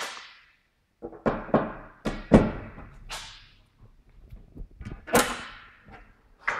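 Attic ceiling hatch and its ladder being opened and handled: a run of about six knocks and thuds, the loudest about two seconds in and again about five seconds in.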